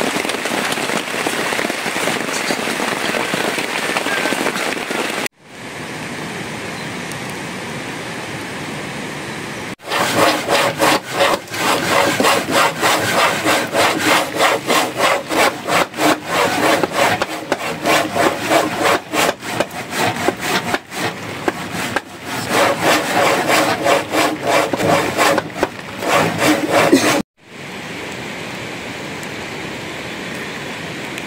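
A blade carving and scraping a block of wood by hand, in quick repeated strokes that go on for most of the second half.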